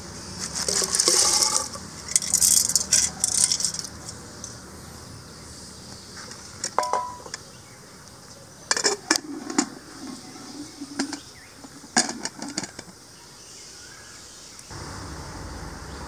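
Dried field beans poured from a steel bowl into an aluminium pressure cooker, rattling in for a couple of seconds, followed by scattered metal clinks and knocks as the cooker and its lid are handled, one clink ringing briefly.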